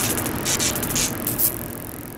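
Electronic logo-sting sound design: a bed of static-like noise with a few short, bright hissing bursts, fading away toward the end.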